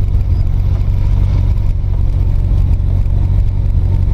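Engine and road noise heard inside a small van's cabin while it drives: a steady low rumble that holds the same pitch throughout.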